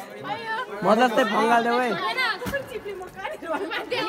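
Several people talking and calling to each other, voices overlapping, with one sharp click about halfway through.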